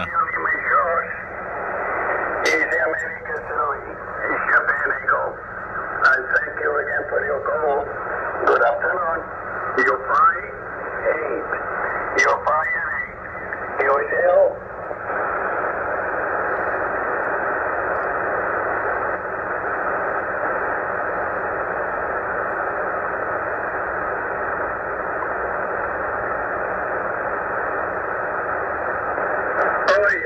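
Single-sideband voice of an amateur radio operator coming through the Tecsun PL-990x receiver's speaker on 40 m LSB, narrow and thin-sounding with static under it. About halfway through, the voice stops and only a steady hiss of band noise remains.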